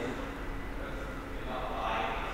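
Indistinct voices in the background, a low murmur of talk with no clear words.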